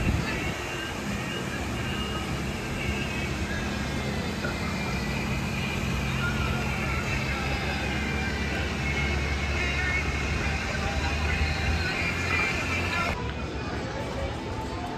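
Amusement-park ambience: a steady low mechanical hum with background voices, its character shifting slightly near the end.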